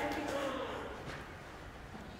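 A faint voice during the first second, then only low room noise.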